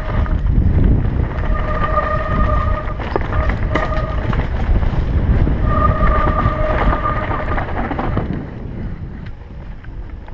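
Mountain bike descending a rough dirt and rock trail, heard from a helmet camera: wind buffeting the microphone and a steady rumble and rattle from the tyres and frame. A steady high whine from the bike comes and goes in stretches of a second or two, with a few sharp knocks over rocks. The noise eases near the end.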